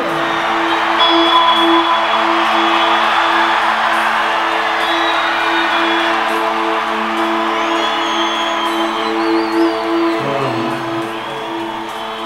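Live band holding a steady sustained chord over a cheering stadium crowd, with a few whistles from the audience; about ten seconds in the chord breaks off and shifts to a lower note.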